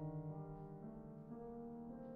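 A soft passage of a tango fantasia for cornet and piano, mostly held piano chords that change a few times.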